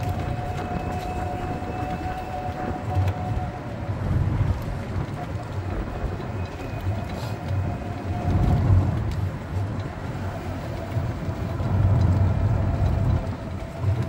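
A resort buggy in motion, heard from aboard: a steady low rumble and rattle of the cart rolling along the path, swelling a few times, with a thin steady whine from its motor that comes and goes.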